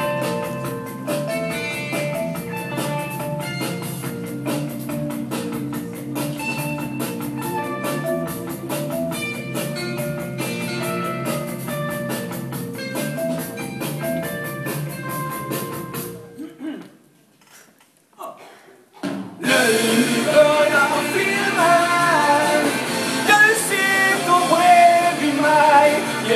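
Live rock band playing an instrumental passage with a steady drum beat and held keyboard or guitar notes. About 16 seconds in the band stops dead; after a few seconds of near silence the music comes back in louder, with a man singing over it.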